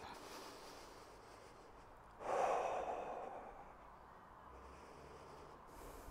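A man's long breath out, a single noisy exhale about two seconds in that fades over about a second, over faint background hiss.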